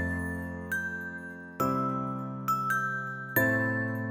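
Background film music: sustained chords that change about every second and a half to two seconds, with bright chime-like notes struck and ringing out over them.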